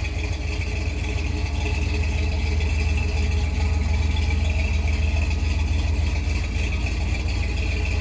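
Custom Jeep's 350 cu in Chevrolet V8 with a 282 cam idling steadily through Magnaflow dual exhaust, a deep even rumble, with a steady high-pitched tone running above it.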